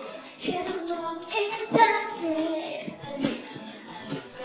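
Female K-pop group singing with the instrumental backing track digitally removed, leaving bare vocal phrases with no bass underneath.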